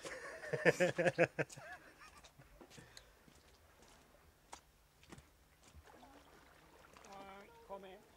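A man laughing heartily for about a second and a half, then quiet outdoor sound with a few faint clicks. A brief voice-like sound comes near the end.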